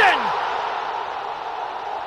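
A football stadium crowd cheering a goal, heard as a steady roar that slowly dies away, just after the last drawn-out word of a commentator's shout falls away.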